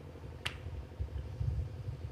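A single sharp click about half a second in, over a low steady hum and rumble.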